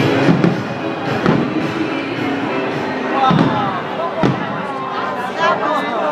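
Fireworks shells bursting with about four sharp booms spread across a few seconds, over background music and people talking.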